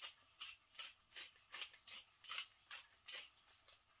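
Hand-twisted pepper mill grinding black pepper: a regular run of short gritty crunches, about two or three a second, stopping just before the end.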